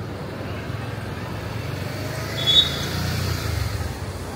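A motor vehicle passing on a city street, its low engine rumble building about a second in and dropping away near the end, with a brief high squeak midway.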